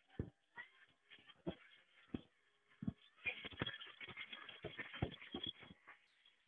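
Pneumatic air motor on a Tri Tool 608SB clamshell lathe turning the rotating head slowly through its first rotation: faint irregular knocks and clicks at first, then from about three seconds in a denser run of clicks over a steady hiss.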